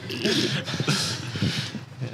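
Stifled, breathy laughter: two or three wheezing bursts of laughing through held breath.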